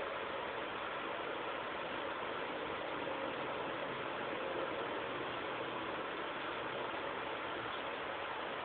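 Steady hiss of background noise, even and unchanging, with no distinct events.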